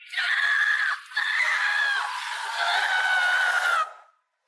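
A boy screaming, three long high-pitched screams in a row, the last one sliding down a little in pitch and cut off suddenly near the end.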